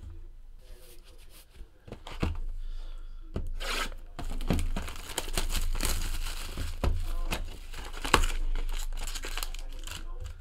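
Clear plastic shrink-wrap being torn off a cardboard trading-card box and crumpled: crinkling and tearing with sharp crackles, starting about two seconds in.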